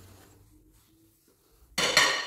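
A single sharp clink of ceramic dishes knocking together near the end, ringing briefly as it dies away, after a quiet stretch.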